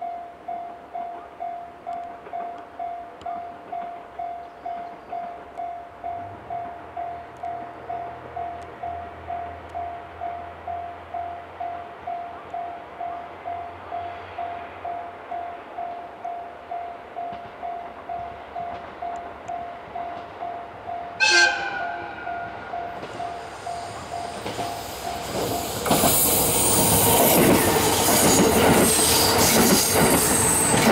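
A KiHa 189 series diesel multiple unit approaching and passing, with a warning bell ringing about twice a second throughout the approach and a low diesel engine hum. About two-thirds of the way in the train gives one short horn blast, and in the last few seconds it runs close by, its engines and wheels on the rails loud.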